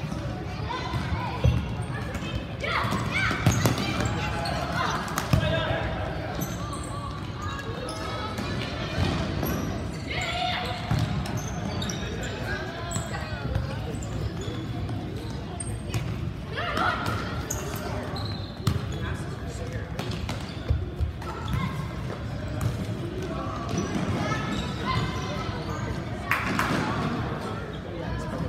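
Indoor soccer game in a gymnasium: the ball is kicked and thuds on the hard floor, with a few sharp knocks, while players and spectators call and shout, all echoing in the large hall.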